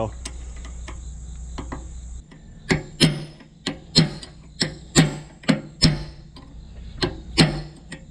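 Hammer driving a steel punch against a rust-seized telescoping PTO shaft: about a dozen sharp metal-on-metal strikes, one to two a second, each ringing briefly, starting nearly three seconds in. The blows are meant to break the rust bond so the shaft slides, and they are marring and peening the metal over. Before the strikes a steady low rumble stops about two seconds in.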